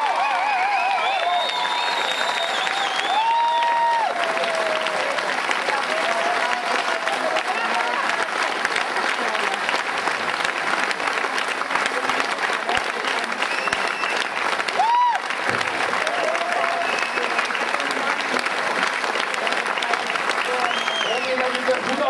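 Audience applauding steadily after a folk dance performance, with voices heard over the clapping.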